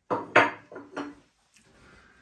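A few sharp metallic clacks and clinks at a stainless steel toaster as metal tongs are used on it to lift out hot Pop-Tarts. The loudest clack comes about a third of a second in, with smaller ones following within the first second.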